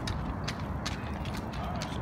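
Small umbrella stroller's wheels and frame rattling over concrete as it is pushed, with a steady low rumble and a few sharp clicks.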